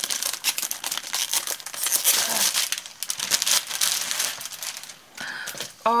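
Clear plastic wrapper crinkling and tearing as it is pulled off a pad of craft paper, in a rapid run of crackles that thins out after about three seconds.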